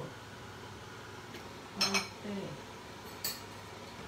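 A few light clinks and knocks of kitchen dishes and utensils being handled, the loudest about halfway through and a smaller click near the end, with a brief murmur just after the loudest one.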